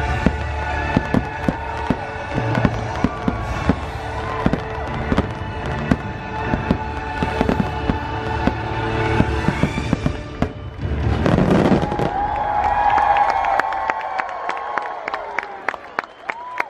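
Fireworks show finale: many aerial shells bursting in quick succession over orchestral show music. A rushing swell comes about eleven seconds in, and a fast run of pops follows near the end.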